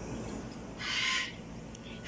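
A single short, harsh bird call about a second in, lasting about half a second.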